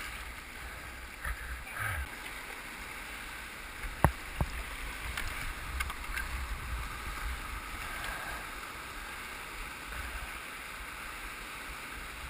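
Rushing whitewater of a river rapid heard from a kayak, with paddle strokes splashing. Two sharp knocks about four seconds in.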